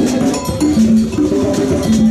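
Noisy music trade-show hall: instruments and percussion playing from around the floor, a mix of short pitched notes and light hits over a steady din.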